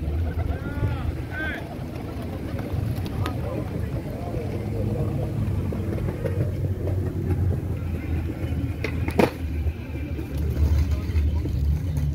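A flock of pigeons cooing, with low wavering calls overlapping throughout over a steady low rumble, and a single sharp click about nine seconds in.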